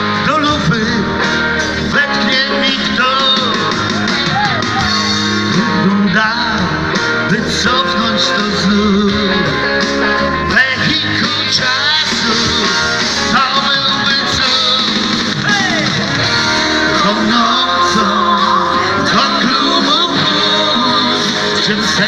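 Live dance band playing a song at steady, loud volume: electric guitar, drums and keyboard, with singing over them.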